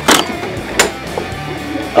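Two brief rustles, about a second apart, of a cardboard-and-plastic blister-pack toy car gift pack being handled and lifted off a display peg.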